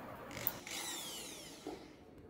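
A small power tool's motor whines briefly and winds down in pitch, after a sharp click about half a second in. A soft knock follows near the end.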